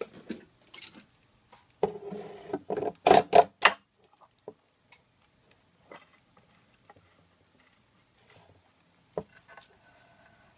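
A clamp being fitted and tightened down onto a stack of tiles: a scraping clatter about two seconds in, then a quick run of about four sharp clicks, then scattered light ticks and one sharp knock near the end.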